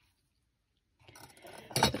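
Silence for about a second, then a fused-glass frame being handled and turned over on a work surface, with a light scrape and a glassy clink or knock just before speech resumes.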